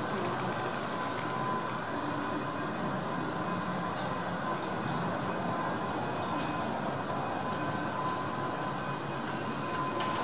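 Perce-Neige funicular car running, heard from inside its cab as it rolls slowly into the station: a steady rumble with a thin, steady whine over it. A light rapid ticking comes in the first second or so.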